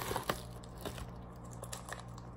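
Plastic bubble-wrap packaging crinkling as it is pulled open, thinning to a few faint crinkles after the first half second.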